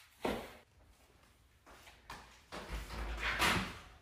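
A house door being opened: a sharp click about a quarter second in, then handling noise and a low rumble that build through the second half.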